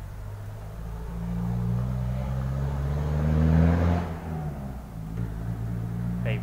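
A Toyota Hilux driving past, its engine note rising and getting louder as it comes by, loudest about three and a half seconds in, then falling away.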